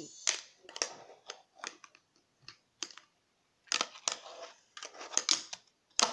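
Sharp, irregular clicks and clacks of a fingerboard's deck and trucks tapping and landing on a wooden desk and a homemade ledge.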